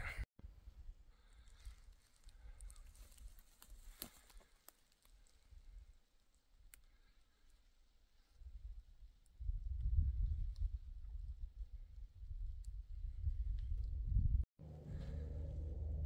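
Distant helicopter: a low rotor rumble that builds from about halfway through and, after a brief break near the end, carries on as a steady low hum. Faint scattered clicks come before it.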